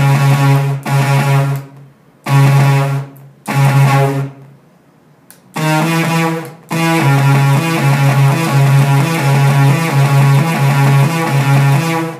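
Software-instrument notes from a DAW, played from a homemade MIDI glove controller. First come four notes at one pitch, set by the controller's tuning switches. After a short pause comes a steady run of notes stepping between a couple of pitches as the switches are taken out one by one.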